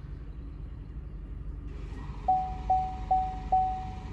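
Four short, evenly spaced electronic beeps, about two and a half a second, in the second half, while fault codes are being cleared from the airbag module. A steady low hum runs underneath.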